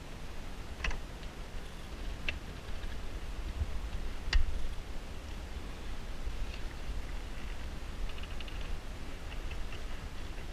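A few sharp metallic clicks and taps, the loudest about four seconds in, then lighter ticking near the end, over a low rumble. This is a screwdriver and hands working the positive terminal clamp of a jet ski's battery to disconnect it.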